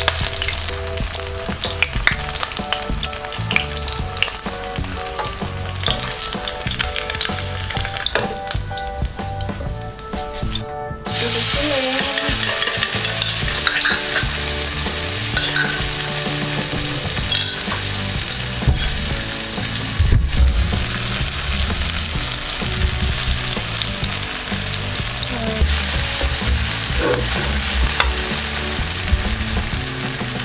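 Hot oil sizzling in a nonstick wok: first around a frying egg, then, after a sudden jump in loudness about eleven seconds in, louder sizzling as chili-garlic paste fries in fresh oil. A spatula stirs the paste toward the end.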